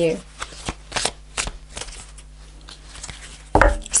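Tarot cards being shuffled by hand: a string of irregular soft flicks and taps.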